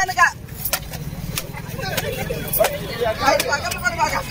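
Glass liquor bottles smashing on the ground: a string of sharp cracks at uneven intervals, over a steady low rumble, with crowd voices building from about halfway.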